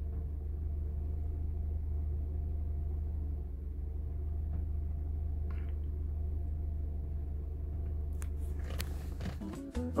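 Mercedes-Benz engine with KE-Jetronic injection idling steadily, heard from inside the car, with a few sharp clicks near the end. It runs smoothly on an aftermarket throttle-plate potentiometer that the owner has calibrated, and he says the car works fine this way.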